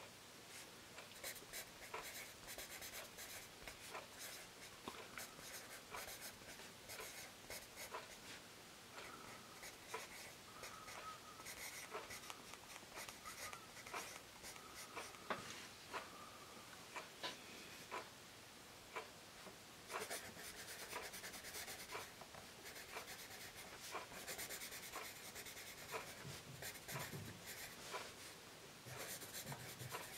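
Tombow Mono 100 B-grade graphite pencil writing on a Rhodia graph-paper pad, faint and quiet. Short separate scratches and taps of printed letters give way, in the later part, to longer continuous strokes of cursive.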